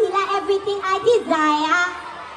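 A woman singing live into a microphone through a stage PA system, short sung phrases ending in a held note with vibrato.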